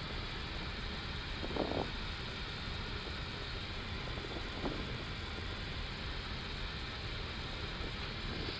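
Steady flight-deck noise of an Airbus A330-200 with its engines at idle while lining up on the runway: a constant, even hum and hiss, with a brief faint voice about two seconds in.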